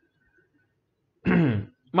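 A man briefly clears his throat with a short voiced sound that falls in pitch, after about a second of quiet.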